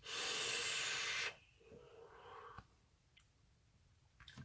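A drag on a VooPoo Drag vape: a steady hiss of air drawn through the atomiser for just over a second, then a softer exhale of the vapour lasting about a second.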